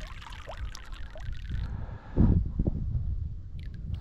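Lake water sloshing and trickling around a rainbow trout held in the shallows, with a few small drips and a low thump about two seconds in.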